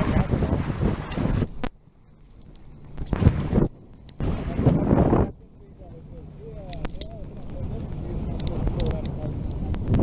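Wind buffeting the camera microphone on a moving boat: loud rumbling gusts at the start, then two short gusts between about three and five seconds in, with quieter gaps between them.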